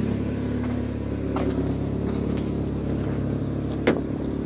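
Mitsubishi Eclipse's engine idling steadily. A sharp click near the end as the driver's door is opened.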